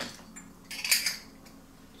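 Metal Zebco 33 spincast reel parts clinking and clicking against each other as they are handled and fitted together, with a short cluster of clinks about a second in.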